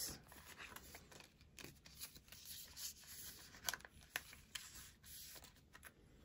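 Near silence, with a few faint soft clicks and rustles scattered through it.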